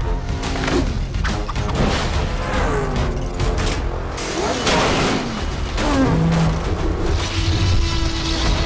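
Dramatic cartoon action music with sound effects laid over it: repeated booms and crashes, and a few falling pitch sweeps.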